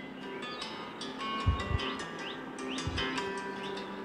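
Quiet background music with short chirping bird calls mixed in.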